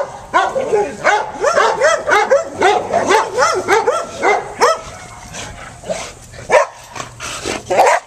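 Dog barking repeatedly in short, quick barks, several a second and overlapping in the first half, then fewer and more spaced out, with a couple of louder barks near the end.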